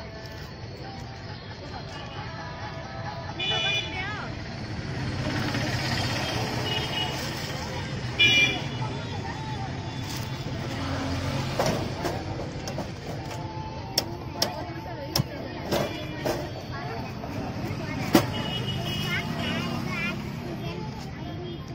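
Busy roadside street-stall ambience: traffic running past, with a couple of short horn toots about three and eight seconds in, and people talking in the background. Several sharp taps come in the second half.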